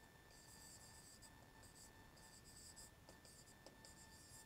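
Faint scratching of a pen stylus writing by hand on an interactive display screen, in a few short strokes as a word is written out, over a faint steady electrical whine.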